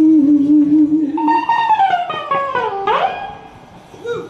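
Live soul music. A long held note wavers in pitch, then a run of notes falls in steps and swoops quickly back up, before the music drops away briefly near the end.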